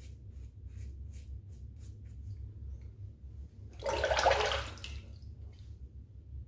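Double-edge safety razor with an Astra blade scraping over stubble in short quick strokes, about two or three a second, for the first two seconds or so. Nearly four seconds in, a tap runs for about a second, rinsing, and is the loudest sound.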